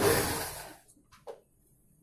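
A sliding room door rolling along its track in one push that fades out within the first second, followed by two light knocks.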